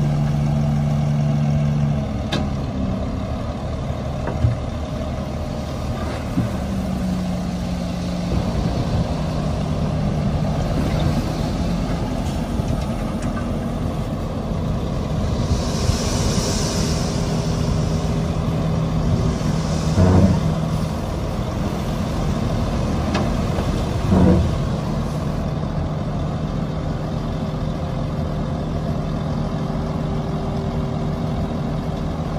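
Heavy diesel engines of dump trucks and a bulldozer running at an earthmoving site, their pitch shifting as they move. A hiss of air like truck air brakes comes about halfway through, and a few heavy knocks stand out, the loudest two around two-thirds of the way in.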